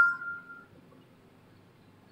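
Whiteboard marker squeaking on the board: a short squeal of a few high tones that step in pitch, fading out within the first second, followed by faint room noise.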